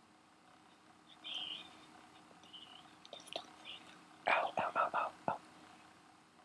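Whispering into an ear, close to the microphone: a brief hiss of whispered words about a second in, then a louder run of short whispered syllables around four to five seconds in.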